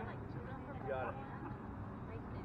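Indistinct voices of people talking, too faint to make out words, over a steady low rumble.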